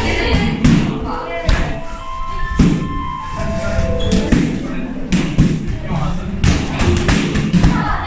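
Boxing-gloved punches and kicks striking a trainer's kickboxing pads: a quick, irregular series of sharp thuds, some in fast pairs and flurries.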